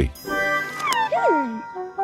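Soft background music holding steady chords, with a short meow-like whine from a cartoon character about a second in that falls steeply in pitch.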